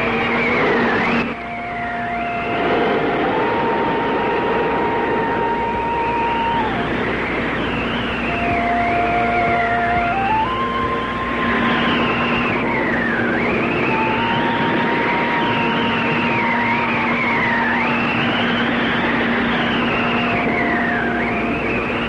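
Old film soundtrack: a steady low drone under sustained melody notes that step between a few pitches, with a high swooping sound that falls and rises again about every two seconds.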